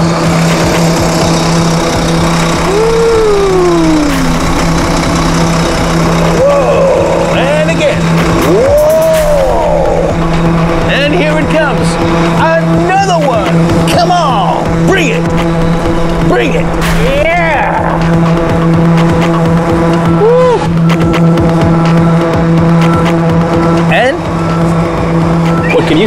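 A heavy truck's engine running at a steady pitch as the truck drives slowly, with background music and rising-and-falling whooping voices over it.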